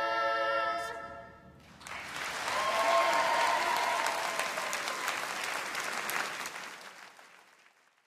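Children's vocal ensemble holding the final chord of an unaccompanied song, cutting off about a second in and ringing away. The audience then applauds, the clapping fading out near the end.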